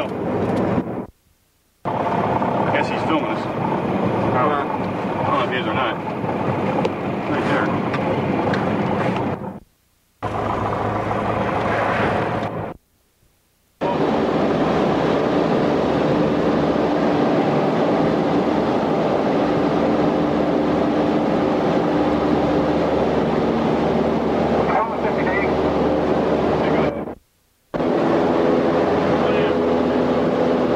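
Light aircraft's engine running steadily, heard from inside the cockpit during the takeoff and climb-out, with indistinct voices over it in parts. The sound cuts out to silence for a moment four times.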